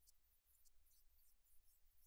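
Near silence: only a faint steady low hum.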